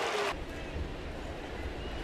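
Ballpark crowd ambience in broadcast audio: a steady crowd hum with a low rumble. The sound changes abruptly about a third of a second in, where the audio cuts to another game's crowd.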